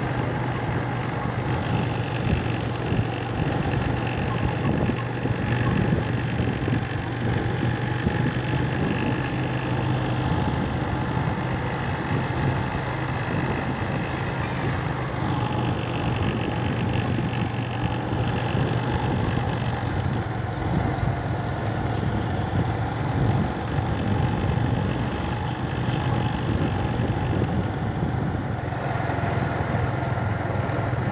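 A motor vehicle's engine running steadily, a constant low hum under a wash of road noise.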